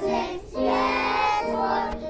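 A group of young children singing a Christmas carol together, with a short break about half a second in and then two long held notes.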